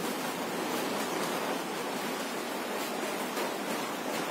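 Steady, even background hiss with no distinct sounds in it.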